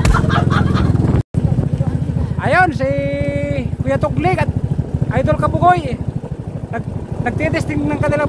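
A motorized outrigger boat's (bangka's) engine running steadily at speed, a fast even pulsing, with voices calling out over it, one call held for about a second. There is a brief break in the sound just over a second in.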